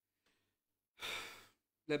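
A man's sigh, one breathy exhale about a second in that fades over half a second: a sigh of emotion from someone close to tears.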